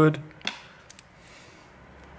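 A single light click about half a second in and two faint ticks about a second in, from a smartphone being handled. Quiet room tone follows.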